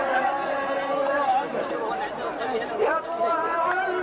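Several men's voices at once, chanting in held and gliding notes mixed with talk.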